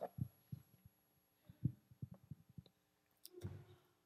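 Faint, irregular low thumps and knocks, with a sharper click and thump a little past three seconds in.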